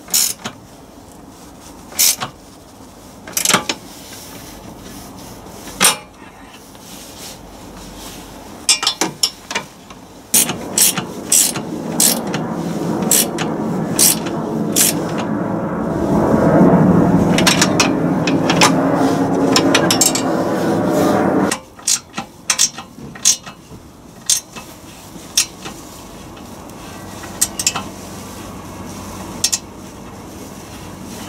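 Hand work on an engine-bay pipe and its metal brackets: scattered clicks and knocks, with about ten seconds of continuous rubbing and scraping starting about ten seconds in as foam pipe insulation is packed around the pipe.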